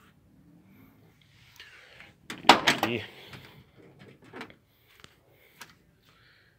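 The metal door of a Volkswagen Kombi being handled: a loud cluster of clunks and rattles about two and a half seconds in, then a few lighter knocks.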